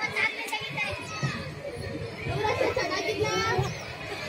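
Speech only: women's voices in a Kannada folk comedy dialogue, with several high voices overlapping in the second half.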